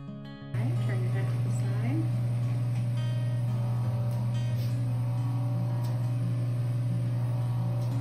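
Microdermabrasion machine's vacuum pump running, a steady low hum that comes in about half a second in, while the suction handpiece is drawn over the skin to vacuum off the loosened dead skin. Soft guitar music plays underneath.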